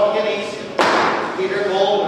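A man's voice in a large echoing hall, cut through about a second in by one sharp bang that rings on briefly in the room.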